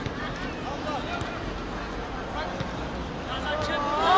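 Scattered voices of spectators and players at an outdoor football match, several people calling and talking at once over a low background murmur.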